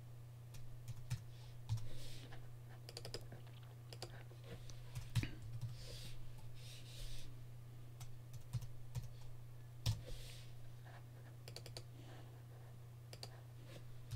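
Computer keyboard typing and clicking in short scattered runs, faint, over a steady low hum.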